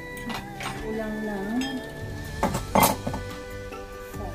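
A few clinks and knocks of kitchen utensils against cookware over background music, the loudest cluster of knocks about two and a half seconds in.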